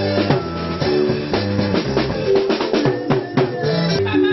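Live gospel band playing an upbeat number, with a drum kit driving a dense beat under guitar and bass notes.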